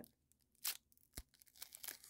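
The foil wrapper of a trading-card pack being torn open and crinkled by hand. It comes faintly, in a few short rips and crinkles, with one sharp click just past a second in.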